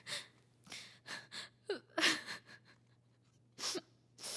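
A woman sobbing: a run of short, sharp gasping breaths with a few brief catches of voice between them.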